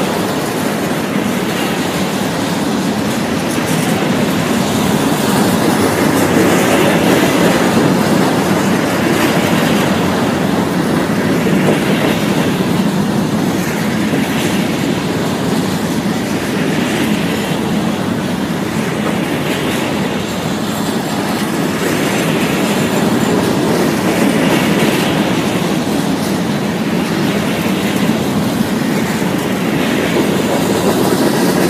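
Freight cars of a manifest train, covered hoppers and tank cars, rolling past close by. There is a steady rumble of steel wheels on rail and a clickety-clack that swells every two seconds or so.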